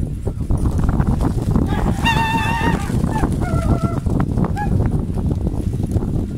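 A large flock of pigeons taking off together, their wings making a dense, loud clatter. Over it, a loud wavering call comes about two seconds in, and a shorter one follows a second later.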